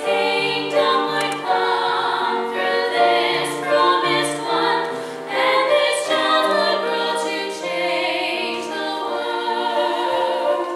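Church choir singing in harmony, women's voices leading on long held notes, with a lower line of notes moving beneath them.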